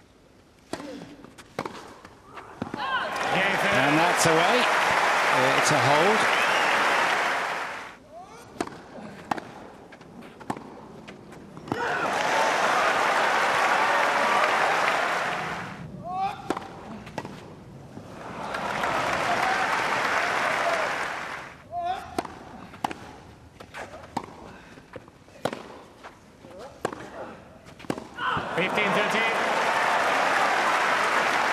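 Tennis crowd applauding and cheering in four long bursts after points, the first with shouts from the stands. In the quieter gaps between, sharp pops of a tennis ball struck by racquets and bouncing on the grass court during rallies.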